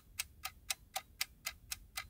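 Clock ticking sound effect, even ticks at about four a second, standing for time passing while the pie bakes.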